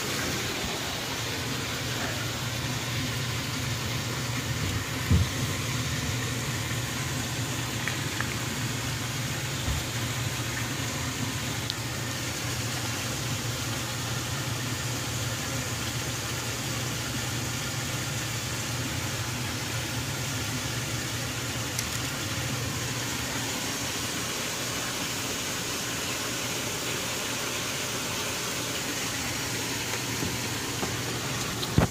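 Steady low motor hum under an even hiss, with a couple of brief knocks about five and ten seconds in.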